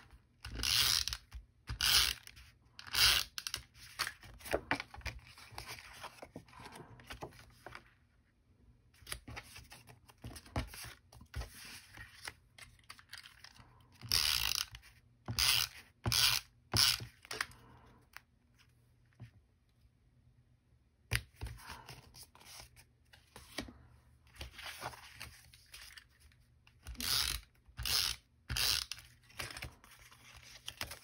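Paper crafting at a table: cardstock and patterned paper being handled, slid and pressed down, with short rasping strokes of a tape runner laying adhesive. The sounds come in irregular bursts, with a quieter stretch about two-thirds of the way through.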